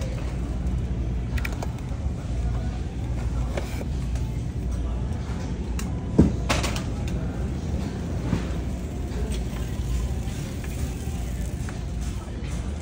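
Supermarket aisle ambience: a steady low rumble with scattered light clicks and clatter, and one sharper knock about six seconds in.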